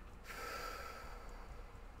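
A woman's long breathy sigh, about a second long, let out while she is flushed with a hot flash.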